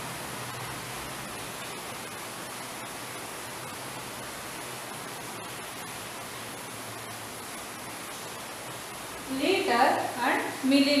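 Steady hiss of background room noise with no distinct events. A woman's voice starts speaking about nine seconds in.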